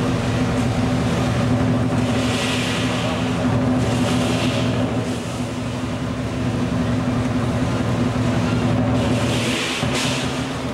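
Southern lion dance percussion: a dense, steady roll on the big lion drum, with clashing cymbals swelling in three times, near 2 seconds, at about 4 seconds and near the end.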